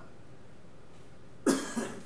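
A person coughing: one sharp cough about one and a half seconds in, followed at once by a smaller second one.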